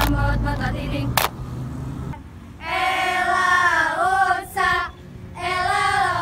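A group of young female voices singing a song in unison, in phrases broken by short pauses. There is a sharp hand clap about a second in.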